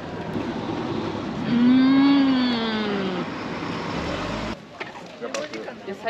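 A woman's long, appreciative "mmm" through a mouthful of strawberry rice cake, rising then falling in pitch, over steady street noise. The background changes abruptly about three-quarters of the way through.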